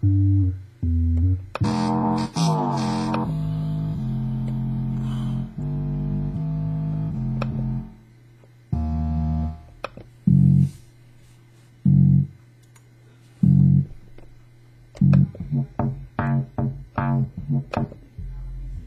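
Stock music loops auditioned one after another on a Maschine Studio, each playing a few seconds of pitched, melodic music before cutting off abruptly as the next is selected. Past the middle come a few single low notes about a second and a half apart, then a quicker run of short notes near the end.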